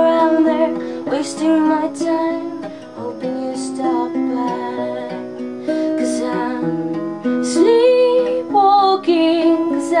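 Acoustic guitar strummed in steady chords, with a woman singing over it; her voice comes through most clearly near the end.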